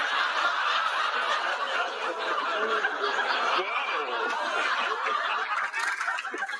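Large studio audience laughing together after a punchline, a dense, sustained wave of crowd laughter.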